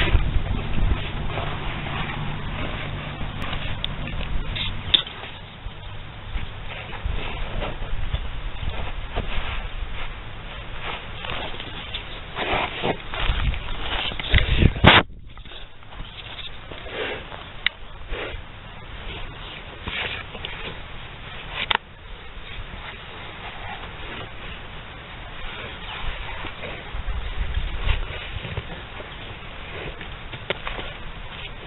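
A bull pawing and rooting into loose dry dirt with its head and front hooves, giving scraping and thudding sounds along with animal calls. Music plays under it for the first few seconds.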